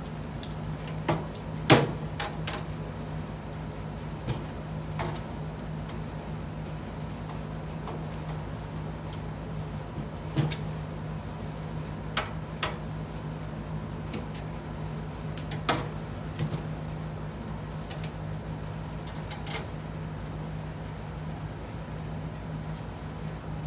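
Scattered sharp metal clicks and clinks of bolts and small hardware being fitted to the gas-strut mount on a steel tool cart, one louder clink a couple of seconds in. A steady low hum runs beneath.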